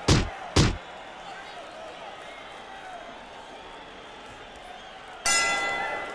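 Two heavy punch-impact thuds about half a second apart, then a low background of faint voices. About five seconds in, a sudden, ringing, shimmering transition sound effect comes in loud and fades.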